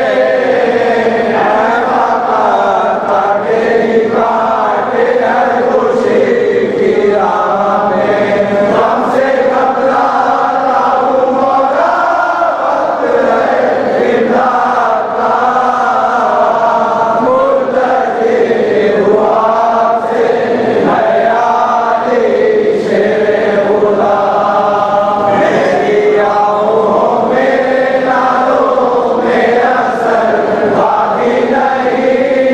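Voices chanting a munajat, a Shia devotional supplication, in a continuous, slow-moving melodic line.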